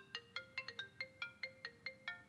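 Mobile phone ringtone playing a quick melody of short notes, about five or six a second.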